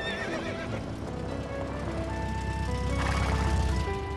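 Cartoon background music with a horse whinnying about the start and a bright jingle of sleigh bells near the end.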